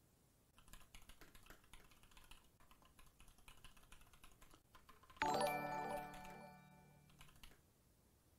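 Fast typing on a computer keyboard for about four seconds, then a sudden bright electronic chime of several ringing tones, the loudest sound here, fading away over about two seconds.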